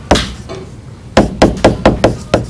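A stylus tapping and knocking against a tablet as the word "equations" is handwritten: one knock at the start, then four quick taps in the second half.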